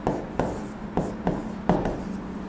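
Marker pen writing on a whiteboard: a quick run of short taps and strokes, about six in two seconds, over a steady low hum.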